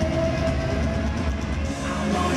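Live rock band playing a loud stretch without vocals, with a steady held note over the drums and bass, recorded from the arena crowd.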